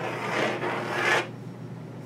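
Chalk scraping across a chalkboard as words are written, a scratchy rasp that stops a little over a second in.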